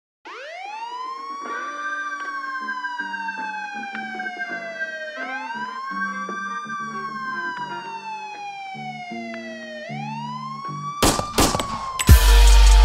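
Police siren wailing, each cycle rising quickly and then falling slowly, about every five seconds, over sustained low musical notes. A few sharp drum hits come in near the end as a beat starts.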